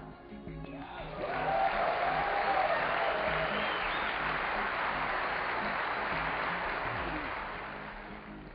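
Audience applause that swells about a second in, holds, and fades away near the end, with a shout or two over it. Soft background music plays underneath.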